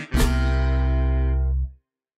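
Recorded dance music ending: a final band chord held for about a second and a half, then cut off suddenly.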